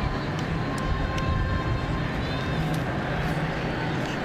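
Steady crowd noise from a soccer stadium, with a few faint sharp knocks in the first second.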